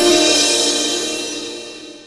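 Channel intro jingle ending on a cymbal crash that rings out and fades away.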